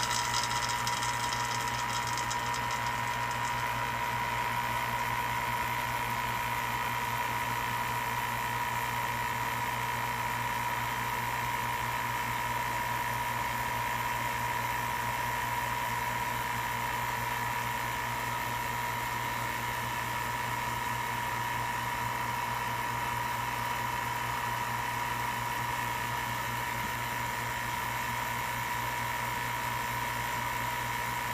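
Vacuum pump running steadily with a constant hum and a high whine, holding the chamber at a deep vacuum of about 15 microns.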